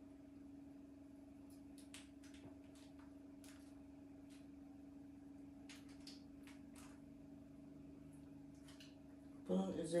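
A steady low hum from a running kitchen appliance, with faint scattered clicks and scrapes of a spoon spreading tomato sauce over a pizza base.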